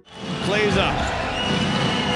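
Live basketball game sound in an arena: crowd noise and voices, with a basketball being dribbled on the hardwood court.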